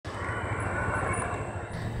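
A motorcycle engine running with a steady low hum.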